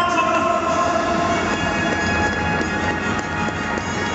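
Music played over a stadium's public-address system, with sustained notes echoing around the stands over a steady wash of background noise.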